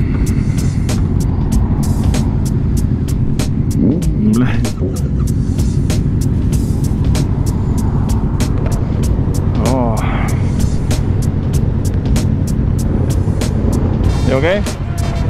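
Yamaha Tracer 7's parallel-twin engine idling through an aftermarket DSX-10 exhaust, a steady low rumble, with a regular light ticking about three times a second over it. Short voice-like sounds come in about four seconds in and again near ten seconds.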